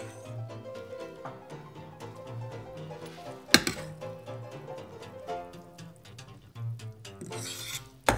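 Background music with held notes, and one sharp metallic clink about three and a half seconds in, from a ladle knocking against a stainless steel pot while foam is skimmed off simmering soup.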